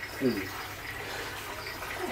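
A steady rushing background noise, with a brief voice near the start.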